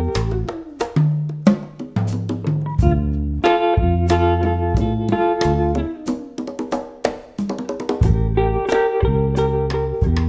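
Instrumental jazz trio: an electric guitar plays a melody of plucked notes over sustained bass notes, with drums and sharp percussive clicks keeping time.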